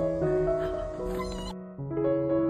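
Background music with a kitten meowing over it. The music breaks off suddenly about one and a half seconds in, and a new piano piece starts just before the end.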